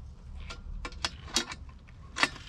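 Small hand wrenches working a bolt and nut on a transmission cooler's mounting bracket: a few light metallic clicks and ticks, irregularly spaced.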